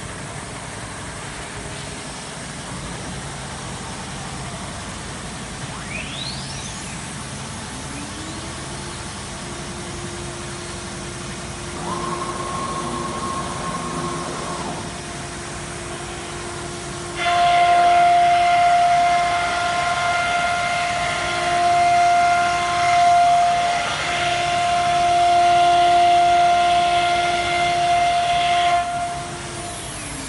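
CIMTECH linear ATC CNC router spindle spinning up with a rising whine. About halfway through it gives a sudden, much louder whine with a rushing noise, as of the bit routing the wooden board, lasting about twelve seconds. Near the end the whine drops and falls away as it stops.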